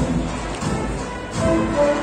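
Spanish processional agrupación musical, a band of cornets, trumpets, flutes and drums, playing a march live. Held melody notes over drum strokes, with a new, higher phrase beginning about a second and a half in.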